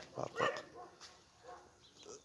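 Dogs barking, with a couple of short barks near the start and fainter sound after.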